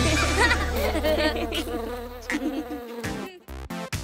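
Cartoon bee buzzing sound effect over a held low final note of a song, fading out about three seconds in, followed by a few short, faint sounds.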